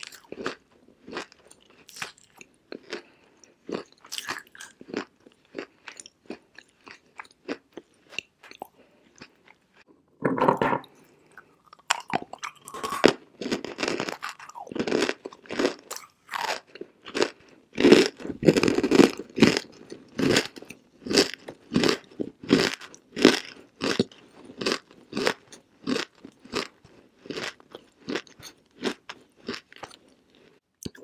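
A mouthful of dry, edible clay being chewed: crunchy chews that are light and sparse at first, then louder and steadier at about two a second from roughly a third of the way in.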